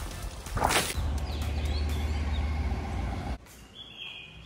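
An elephant blowing a burst of water from its trunk, a sudden rush of spray about half a second in, followed by a steady low rumble that cuts off abruptly near the end.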